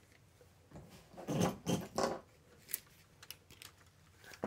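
A plastic LEGO brick model being handled by hand: soft plastic knocks and rustles about a second and two seconds in, then a few light clicks.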